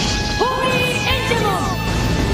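Anime transformation sound effects over music: a sudden crash at the start, then a run of pitched tones sliding downward in pitch as the armour forms.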